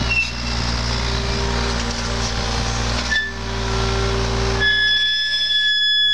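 John Deere compact excavator's diesel engine running under load while it digs. A high steady whine joins in near the end.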